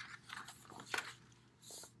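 Pages of a picture book being handled and turned: a few soft paper rustles and light taps, with a short rustle near the end.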